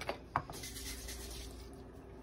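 One brief knock about a third of a second in, then a faint steady room hum.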